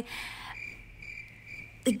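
A short breath, then a faint, high, steady chirping that pulses about three times a second, like a cricket calling.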